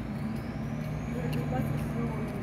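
Steady low hum of a vehicle engine on a city street, with a faint high whine that rises and then eases off.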